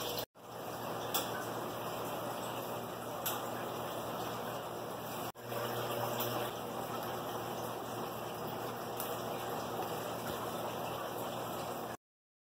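Steady rush of running water from aquarium filters in a fish room, briefly cutting out twice.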